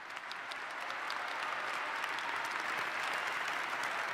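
Large audience applauding, swelling over about the first second and then holding steady.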